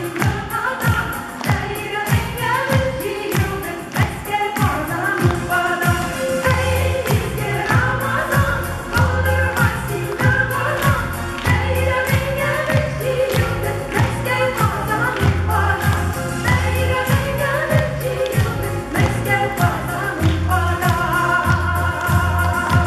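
A women's vocal ensemble singing a Tatar song together over backing music with a steady beat; a deep bass line comes in about six or seven seconds in.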